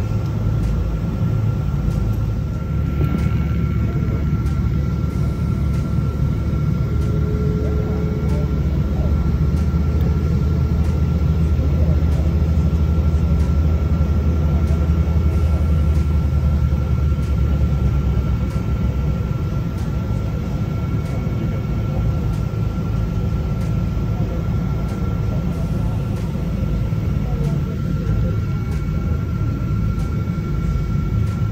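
Airliner cabin noise while taxiing: a steady low rumble of the jet engines and airframe with a thin steady whine over it. The deepest part of the rumble eases off about two-thirds of the way through.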